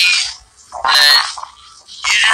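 Two short, wordless, croaky voice sounds, one fading just after the start and another about a second in.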